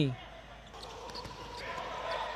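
Indoor futsal arena sound at low level: a hum of crowd noise in the hall with a few faint knocks of the ball and players' feet on the hard court floor.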